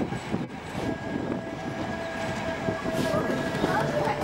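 Passenger train running along a station platform, with a steady whine from about a second in.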